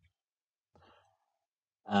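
A faint, short breath or sigh from the narrator close to the microphone, then the start of his spoken 'uh' at the very end; otherwise near silence.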